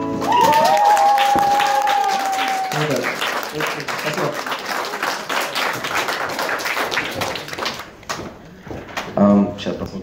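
Small audience applauding and cheering at the end of an acoustic song, with one long high call held for about two and a half seconds at the start. The clapping dies away about eight seconds in.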